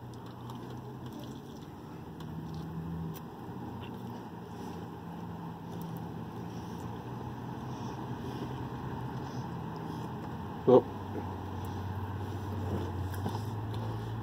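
Low, steady drone of a pickup truck's engine idling, heard from inside the cab; its pitch drops slightly about ten seconds in.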